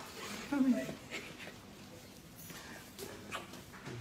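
Emotional human voices: a short, loud crying voice about half a second in, followed by fainter voices.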